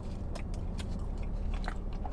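A man chewing a bite of cronut donut hole, with a few soft mouth clicks spread through the chewing, over a low steady hum inside a car cabin.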